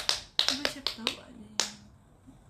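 A young woman talking in short bursts, with a run of sharp clicks among the syllables.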